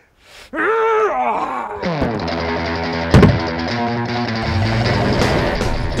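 A man's long strained yell, its pitch rising and falling, as he heaves a cooler overhead. About two seconds in, music takes over, with one loud hit about a second later.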